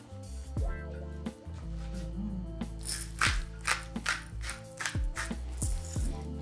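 Background music with steady chords. From about three seconds in, a spice mill grinds seasoning onto a raw steak in a run of quick gritty crunches, about four a second.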